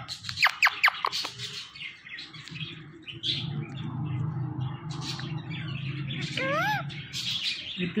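Rose-ringed (ringneck) parakeet calling: a quick run of about five sharp, downward-sweeping whistles about half a second in, then a single rising-and-falling whistle about six and a half seconds in, over a low steady hum. At the very end it starts its mimicked "me too".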